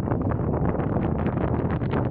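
Wind buffeting the microphone: a loud, steady low rush broken by many short crackles.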